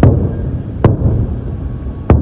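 Distant explosions from a rocket barrage: two sharp booms less than a second apart over a continuous low rumble.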